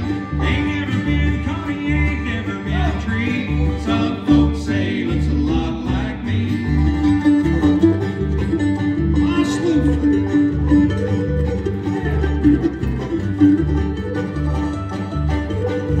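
Bluegrass band playing an instrumental break: five-string banjo, acoustic guitar, fiddle, mandolin and upright bass, the bass keeping a steady beat under quick picked notes.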